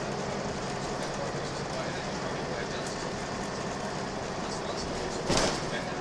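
Steady engine and road noise heard inside a Volvo B10BLE single-deck bus under way, with a faint low hum. A short, loud burst of noise comes about five seconds in.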